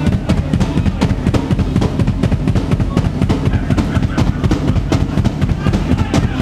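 Live rock band playing loud and fast: a drum kit pounding out rapid, steady kick and snare hits under an electric guitar.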